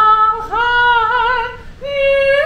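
A woman singing a slow melody with no accompaniment, holding long notes with vibrato and taking a short breath near the end.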